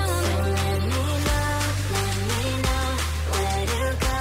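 Background music with a steady beat, sustained bass and a melodic line.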